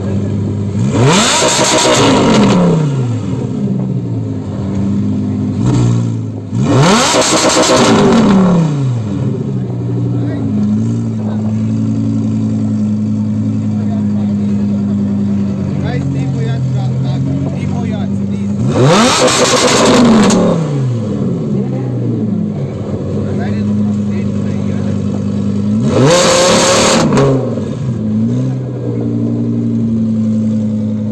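Lamborghini Huracán's naturally aspirated V10 revved hard four times while stationary, each rev climbing quickly and falling back. The engine idles steadily between the revs.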